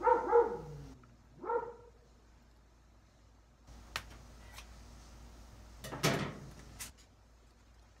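A dog barks twice in the first two seconds, the first bark longer than the second. Later come a few light clicks and a short rustle of handling.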